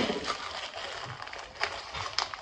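Packaging being handled close up: crinkling and rustling, with a few sharp clicks, the sharpest near the end.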